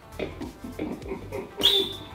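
Helium escaping from a Balloon Time tank's nozzle through a covering of slime: short, irregular squeaky sputters, then a loud, sharp whistling hiss near the end as the gas forces its way out.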